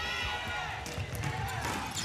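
A basketball being dribbled on a hardwood court during play, with a run of repeated low bounces.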